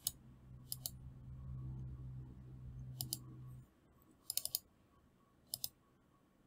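Computer mouse clicking: a single click, then short pairs and a quick run of three or four clicks, spread through the few seconds. A faint low hum runs under the first half and stops.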